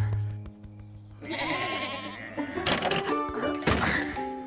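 Cartoon background music with low held notes, broken at about one second in by a wavering sheep bleat lasting about a second and a half, after which the music resumes with short plucked-string notes.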